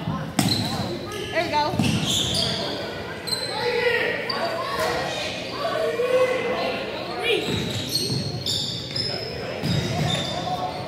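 A basketball bouncing now and then on a hardwood gym floor, each bounce echoing in the large gymnasium, among spectators' voices.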